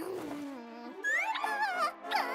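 Wordless cartoon character vocalizing: a low grumble that falls in pitch, then a higher, wavering call from about a second in, over background music.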